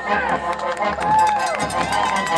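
Marching band field show passage of voices calling out over light percussion ticks, the brass having stopped.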